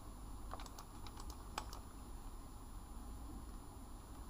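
Faint room tone: a low steady hum with a few light, scattered clicks in the first couple of seconds.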